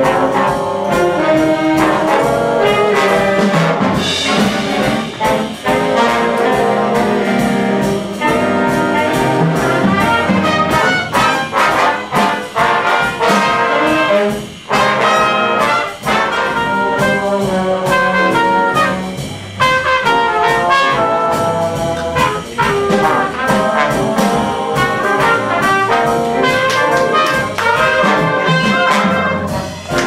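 Big band playing jazz live: saxophones, trombones and trumpets sounding together as a full ensemble, with a few short breaks between phrases.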